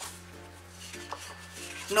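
Soft background music with light handling of stiff scrapbooking paper sheets, including a faint tap about a second in.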